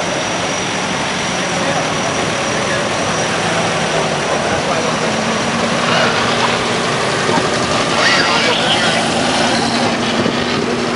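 Vintage cars' engines running at low speed as the cars drive slowly past one after another, a little louder about six and eight seconds in, over a steady hiss and background voices.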